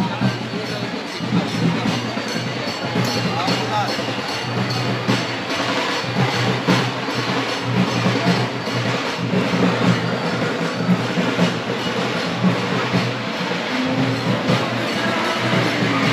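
Dense din of a crowd mixed with loud music, voices mingling under a steady low drone, with scattered short knocks.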